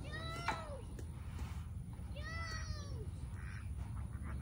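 A peacock calling twice, each call a short wail that rises and falls in pitch, about two seconds apart.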